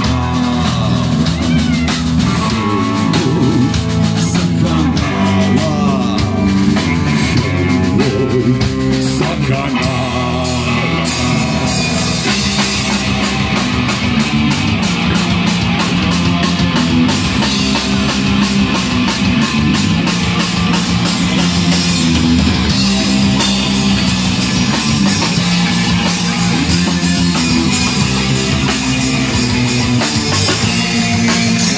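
Live rock band playing loud, with drum kit and electric guitar. About ten seconds in, the drums settle into a fast, steady beat with rapid, even cymbal strikes.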